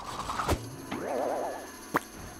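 Cartoon sound effects: a sharp thump about half a second in, then a boing with a quickly wobbling pitch, and a sharp click near the end.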